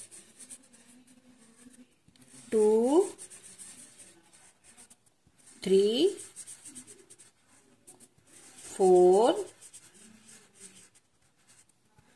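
Felt-tip sketch pen rubbing and scratching on paper as circles are coloured in. A voice counts aloud between the strokes, one short number about every three seconds.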